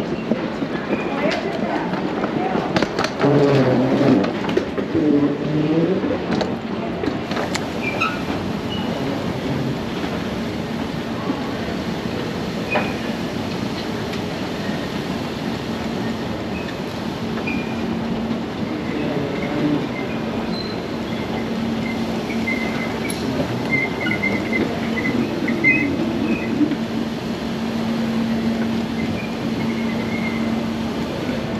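Airport terminal ambience: a steady rumble with indistinct voices in the first few seconds, and a steady low hum joining in about halfway through.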